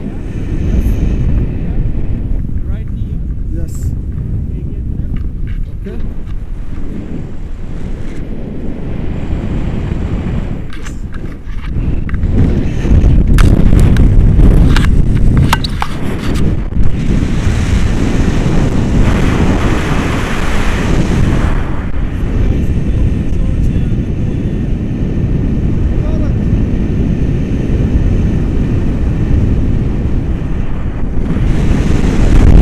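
Wind of flight buffeting an action camera's microphone on a tandem paraglider, a steady low rumble. It grows louder about halfway through, with a few knocks as the camera is handled.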